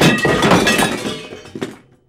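Loud crash sound effect of something breaking, with a glassy, shattering clatter that dies away over about a second and a half and a sharp knock near the end.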